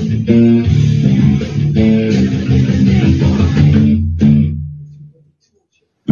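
Electric bass played fingerstyle along with a heavy rock band recording. The music stops abruptly about five seconds in, leaving a short silence before the band comes back in.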